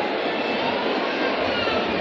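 Steady din of a dense crowd in a large mall hall, many voices blurring into one continuous hubbub.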